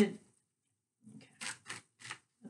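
Tarot cards being shuffled by hand: a few short, soft swishes of cards sliding over one another, starting about halfway through, each about a quarter-second apart.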